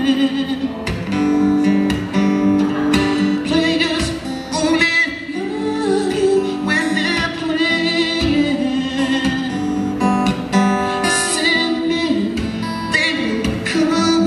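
Live acoustic guitar accompanying a man singing a smooth vocal line into a microphone, with steady chords under the melody.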